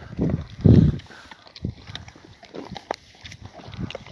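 Dogs feeding on raw wild boar meat and bones: chewing, crunching and tearing, with scattered sharp clicks. A louder low burst comes in the first second.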